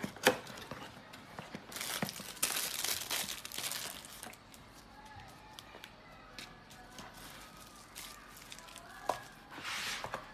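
Hands unpacking a cardboard box: a sharp snap of a cardboard flap just after the start, then plastic packaging crinkling and rustling for about two seconds, followed by quieter handling of cardboard and paper with scattered light clicks.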